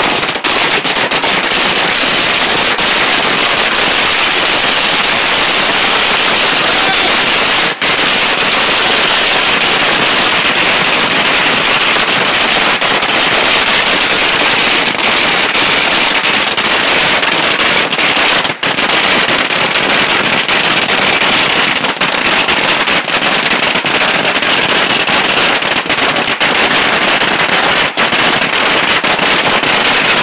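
A long string of Tết firecrackers going off in a dense, continuous rattle of rapid bangs, loud throughout, with two very brief lulls.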